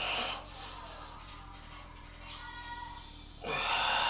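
A man's two forceful breaths while flexing, a short one at the start and a longer, louder one near the end, over a faint steady hum.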